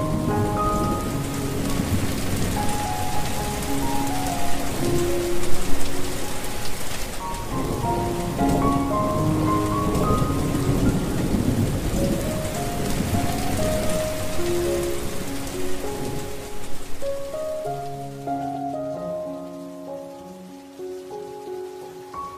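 A loud, steady hiss of falling water with a deep low end, over soft background music of slow, sustained single notes. The water noise fades away over the last few seconds, leaving the music.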